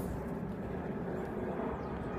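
Steady low background rumble, with a brief rustle of a book page turning at the very start.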